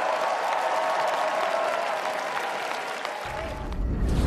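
Studio audience applauding, slowly fading. A deep low rumble starts near the end.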